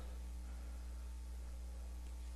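Faint room tone in a pause between speech: a steady low hum with a few faint steady tones over light hiss.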